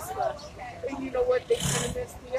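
Faint, indistinct speech from people nearby in the street, with a short breathy noise near the end.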